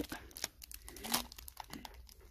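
Plastic packaging crinkling in faint, irregular rustles and small clicks as a cellophane-wrapped pack of fabric rolls is picked up and handled.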